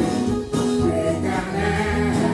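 Gospel worship singing: a woman leads a song into a microphone while the congregation sings along, over instrumental backing.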